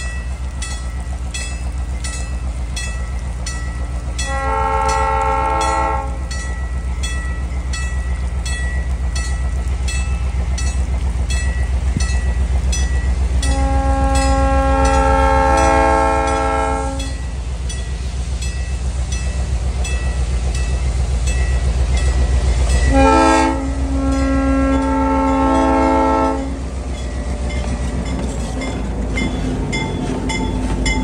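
Approaching diesel locomotive sounding its multi-tone air horn in four blasts, long, long, short, long, the pattern sounded for a grade crossing, over the steady low rumble of its engine.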